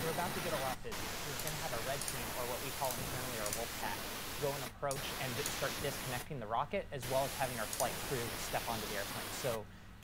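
Faint speech from a relayed webcast under a steady hiss.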